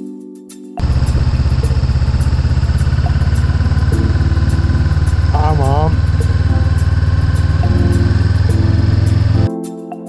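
Motorcycle engine idling, a loud steady low rumble that cuts in suddenly about a second in and cuts off near the end.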